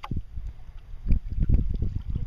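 Irregular low rumble of wind and handling on the microphone of a camera held in a sea kayak, heavier in the second half, with a sharp knock at the very start.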